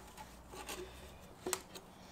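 Light plastic clicks and knocks of PVC pipe and fittings being pushed together and handled, with one sharper click about one and a half seconds in.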